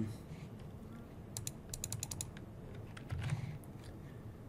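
Computer keyboard and mouse clicks: a quick run of about eight clicks in under a second about halfway through, with a few single clicks around it.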